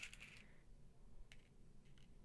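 Near silence, with a faint rustle at the start and a single small click about a second and a half in.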